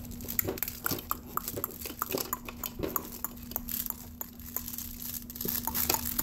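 A baby handling the toys on a plastic activity center: irregular small clicks and clatters, mixed with short mouthing sounds, over a steady low hum.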